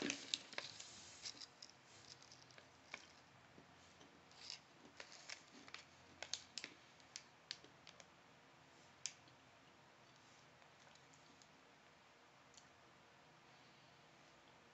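A mouthful of almonds being chewed: faint, irregular crunches and clicks, a few each second, petering out about nine seconds in.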